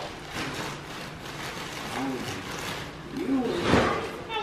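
Wrapping paper rustling and crumpling, with a louder rustle near the end.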